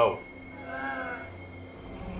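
A cat's meow: one call, a little over half a second long, rising then falling in pitch, about half a second in.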